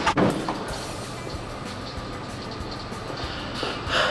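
Steady mechanical noise with faint music underneath, and a short knock right at the start.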